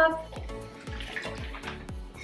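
Water sloshing as a mouthful is drunk from a plastic bottle, over background music with a steady beat.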